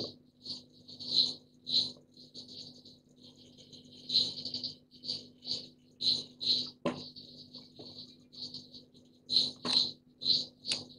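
Computer mouse clicking, short soft clicks at an irregular pace, many in press-and-release pairs, as pen-tool anchor points are placed, over a faint steady hum.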